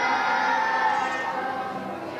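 A group of young children singing together as a choir, holding long sung notes, with a slight dip in loudness near the end.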